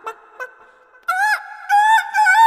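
A loud pitched tone with overtones: a short wavering note about a second in, then a long held note near the end. A few faint clicks come before it.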